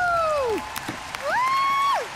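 Studio audience cheering and applauding, with two long high whoops over the clapping, the second rising and held before breaking off.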